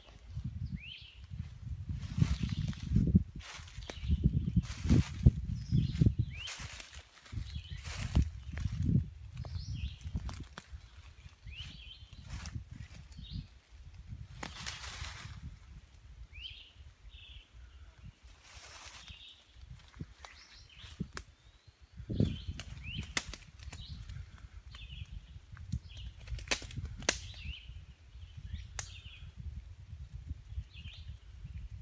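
Crackling and rustling of footsteps and brushing through forest undergrowth, with sharp twig-like snaps, loudest in the first ten seconds. Scattered short bird chirps sound in the background.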